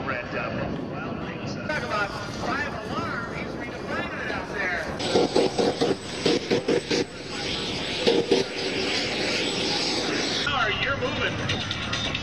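Jet engine of a jet-powered outhouse running as it rolls along a runway, turning louder and hissier about five seconds in, with voices heard over it.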